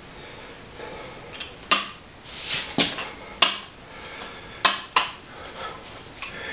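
A motorcycle front fork tube being slid up into its triple clamps, with about five sharp metallic clinks and knocks at irregular intervals as metal meets metal.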